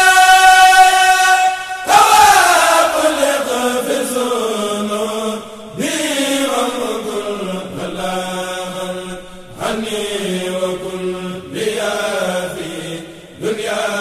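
Devotional chanting in Arabic: long drawn-out notes that glide slowly downward, in phrases that break off every two to four seconds.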